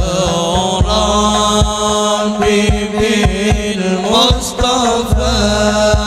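A male voice sings an Arabic sholawat through a microphone and PA with long, ornamented melodic lines, backed by a hadroh ensemble's rebana frame drums striking beneath him.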